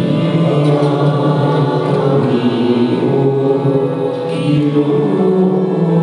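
A slow Cebuano church hymn: singing in long, held notes over instrumental accompaniment.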